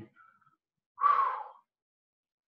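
A person's single sharp breath, about half a second long, coming about a second in and about as loud as the speech around it.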